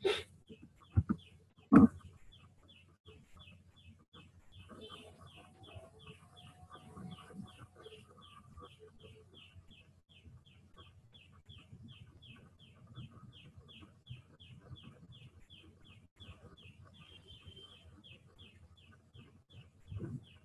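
A bird chirping over and over in a steady rhythm, about two or three short high chirps a second, faint in the background. Two sharp clicks come in the first two seconds, the louder one at about two seconds.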